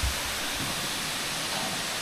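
Waterfalls pouring down the cliffs: a steady, even rushing of falling water.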